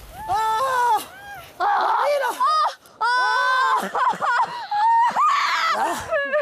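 People screaming and yelling in fright: a run of short, high-pitched cries with brief gaps between them.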